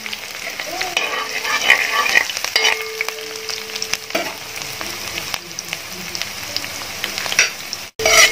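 Chopped garlic and green chillies frying in hot oil in a wide metal pan, sizzling steadily, while a spatula stirs and scrapes through them with small clicks.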